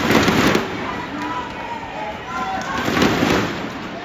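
Arena crowd at a badminton match between rallies: a steady din of many voices, with two loud bursts of crowd noise, one at the start and one about three seconds in.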